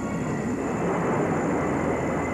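Jet fighter engines at takeoff power: a loud, steady noise without breaks.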